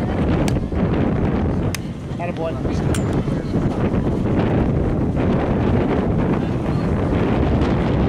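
Wind buffeting the microphone, a steady low rumble throughout. Three short clicks come about half a second, just under two seconds and three seconds in.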